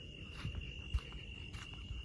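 Crickets trilling in one steady, high-pitched note through the night air. A single soft knock about a second in.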